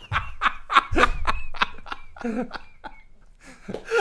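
Two men laughing heartily together in a quick run of laughs that fades out about three seconds in.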